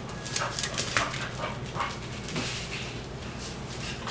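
Pit bull at play close by, making a run of short, sharp noises through the first two seconds, loudest about a second in, then quieter.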